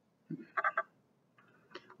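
A short, faint murmur of a person's voice about half a second in.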